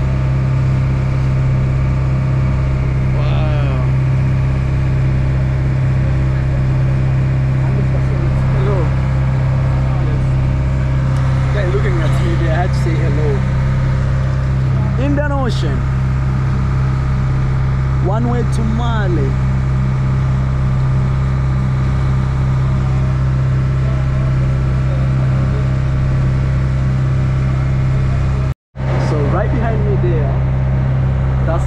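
Engine of a small local passenger ferry running under way, a loud, steady low drone with an even hum. Voices are heard faintly over it at times, and the sound cuts out for an instant near the end.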